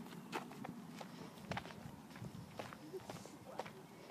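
Footsteps on a dirt path: a faint, uneven series of separate steps, about two a second.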